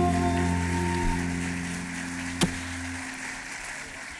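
The Arabic ensemble's final held chord, low notes ringing on and fading, under audience applause. A single sharp click comes about two and a half seconds in.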